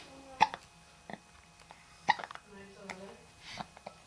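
Young baby hiccupping: two short sharp catches about a second and a half apart, with a fainter one between, and a soft little vocal sound from the baby after the second.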